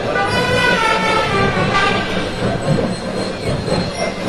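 A marching band playing in the street: held notes for about two seconds, giving way to a noisier mix about halfway through.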